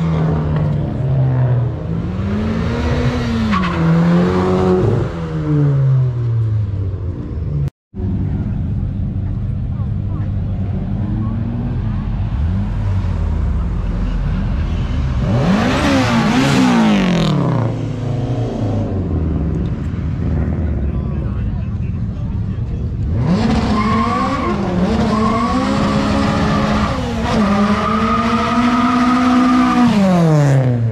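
Several cars drive past one after another, their engines revved up and down in repeated rising and falling sweeps. The loudest revving comes about halfway through, as a Honda S2000 goes by, and a longer stretch of revving follows near the end.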